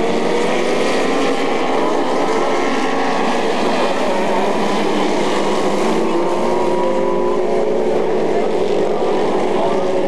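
Several dwarf race cars' small motorcycle engines running together, their pitches rising and falling as the cars circle the track.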